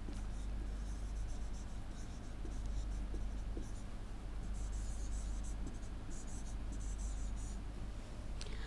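Stylus scratching across a tablet surface in short, intermittent strokes while handwriting a word, over a steady low electrical hum.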